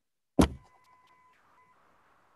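A single sharp thump about half a second in, loud and brief, then a faint steady high tone lasting about a second over faint hiss, heard through video-call audio.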